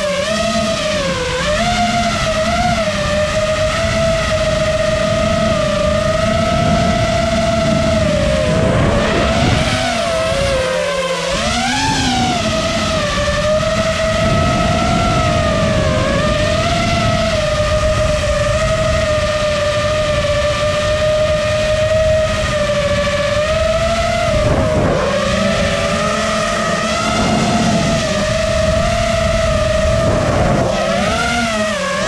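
5-inch FPV quadcopter on a 6S battery in flight, its brushless motors and propellers giving a steady whine whose pitch swoops down and back up with the throttle, most sharply about eleven seconds in and again around twenty-five seconds.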